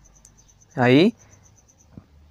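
Faint, high-pitched cricket-like chirping, pulsing about ten times a second, that stops near the end. A single short spoken syllable sounds over it about a second in.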